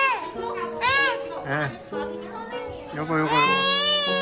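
A toddler's high-pitched squeals: a short one at the start, another about a second in, and a longer one near the end, over background music with steady held notes.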